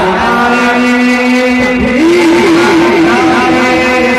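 A man's voice, amplified through a PA, singing in a naat recital: one long held note, then about halfway through a step up to a higher note held with vibrato.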